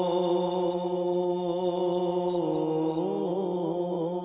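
A man's solo voice reciting an Urdu naat into a microphone, holding long, steady notes. About halfway through it steps down to a lower note, then ornaments it with quick melodic turns near the end.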